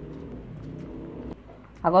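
Water at a rolling boil in a pot of sliced carrots, under a faint, low, steady drone that stops about one and a half seconds in.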